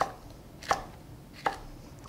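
Chef's knife slicing down through a poblano pepper and knocking on a wooden cutting board: three sharp, evenly spaced strokes, a little under a second apart.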